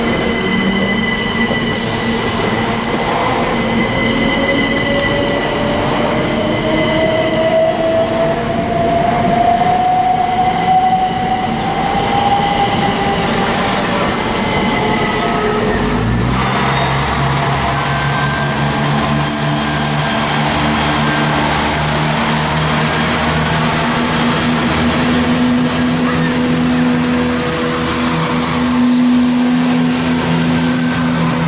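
Passenger multiple-unit train pulling out of the platform, its motor whine rising steadily in pitch as it accelerates. About halfway through the sound shifts abruptly to a lower, steady running note as a train moves past the platform.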